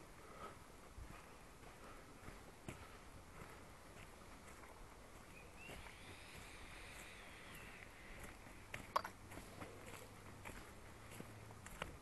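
Faint footsteps on a dirt path strewn with dry leaves, with a few sharper clicks about nine seconds in. A faint high tone rises and falls in the middle.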